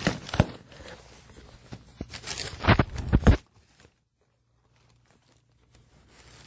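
Cardboard box and packing being torn open and crinkled, with a sharp knock early on and a cluster of loud knocks a little before the middle. The sound then cuts off suddenly to silence for the last couple of seconds.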